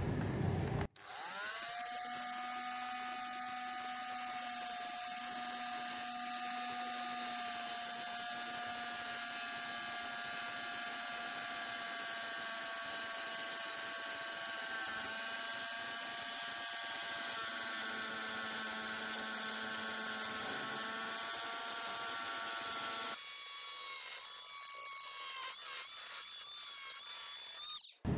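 Oscillating multi-tool with a round grit-edged blade cutting into a red brick: a steady high motor whine that starts about a second in and holds an even note. Over the last few seconds its note changes and wavers.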